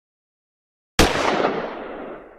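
A single pistol gunshot about a second in, sudden and loud, with a noisy tail that fades out over about a second and a half.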